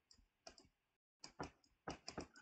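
Faint, irregular clicks and taps of a stylus on a drawing tablet during handwriting, about six in two seconds.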